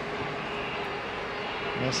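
Steady stadium crowd noise, an even murmur from the stands during live play, with a faint steady hum underneath.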